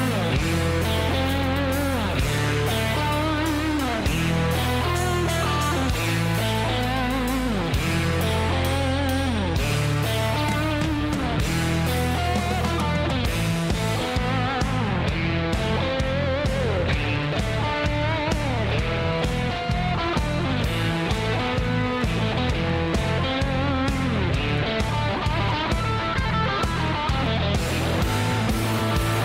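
Live rock band playing an instrumental passage: an electric guitar lead with bent, wavering notes over bass guitar and drums. Long held bass notes give way about halfway through to a busier, driving beat.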